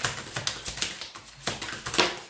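A deck of tarot cards shuffled by hand: a quick run of papery flicks and clicks as the cards riffle, with a louder snap at the end.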